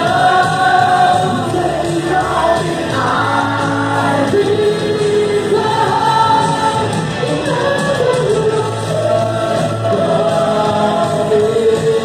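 Live rock band playing: electric guitar, bass and drums with sung vocals, including long held notes.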